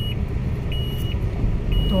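A car's dashboard warning chime beeping a single high note about once a second, over the low rumble of the engine and tyres heard from inside the moving car.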